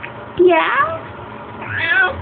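Baby cooing: a short, high-pitched vocal sound near the end.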